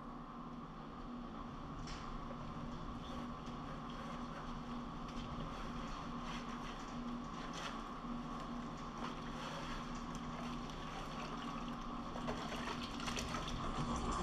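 Water sloshing and splashing in a plastic bucket as a rubber gold-sluice mat is worked and rinsed by hand, washing the gold concentrate out of it. A faint steady hum runs underneath.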